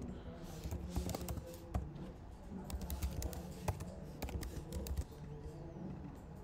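Typing on a computer keyboard: irregular, scattered key clicks.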